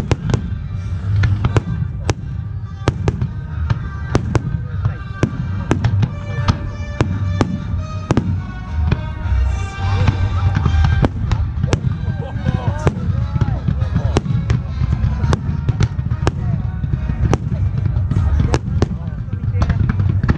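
Fireworks display: a steady run of sharp bangs from bursting aerial shells, about two a second, over a continuous low rumble.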